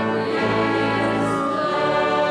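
Choir singing a hymn in sustained chords, the chord changing about half a second in and again near the end.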